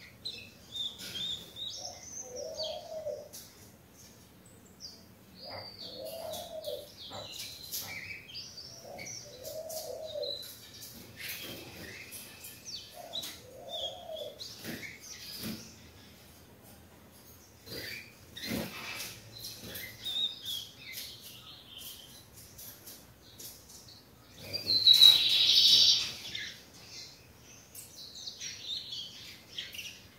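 A young rufous-collared sparrow (tico-tico) practising its first song, giving short scattered high chirps and halting notes rather than a full song: a juvenile just beginning to learn the adult phrase. A low cooing call repeats about every four seconds in the first half, and one much louder burst of high notes comes late on.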